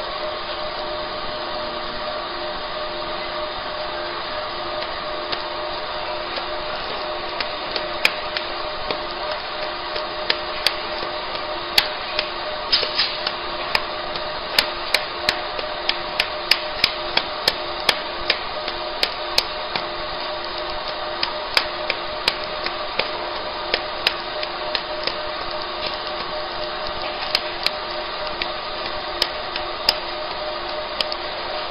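Fiber laser marking machine running with a steady humming drone from its fans. Irregular sharp clicks start about seven seconds in, come thickest in the middle, then thin out.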